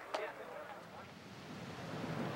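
Faint, steady outdoor ambience of a golf course gallery, a low even hiss with no distinct events.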